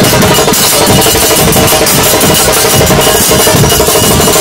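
Argentine murga band playing live and loud: a line of bombo bass drums beats a steady rhythm under held notes from trombones.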